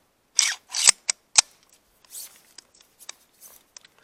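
Steel launch insert sliding into the barrel of a 26.5 mm flare gun, metal on metal: two short scrapes and then three sharp clicks in the first second and a half, followed by faint small taps as it is seated.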